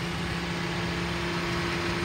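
The 3.5-litre V6 of a 2012 Ford Explorer idling, a steady, even hum.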